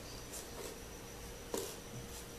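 Faint rustling of hands smoothing and handling cut fabric pieces on a tabletop, with a single light tap about one and a half seconds in.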